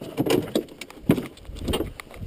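Plastic hood of a 1999 Polaris Indy 500 XC snowmobile being swung open, rattling and knocking in a series of sharp clacks.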